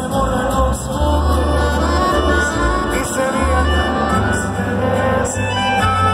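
Live Mexican regional band playing a ranchero-style song through an arena PA, with a singer and long, deep bass notes, heard from among the crowd.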